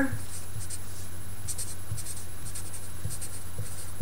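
Felt-tip marker writing on paper: short, irregular scratchy strokes as the words are written out, over a steady low hum.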